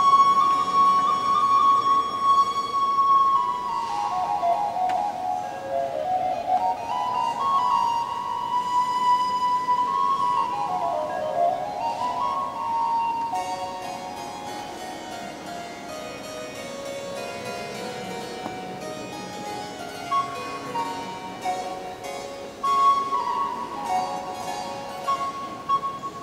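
Baroque transverse flute playing a melody of held notes and quick falling runs over harpsichord accompaniment. The flute line fades for several seconds past the middle, then comes back near the end.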